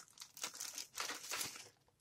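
Faint crinkling and rustling as lip gloss tubes are picked up and handled, a string of short crackles that stops just before the end.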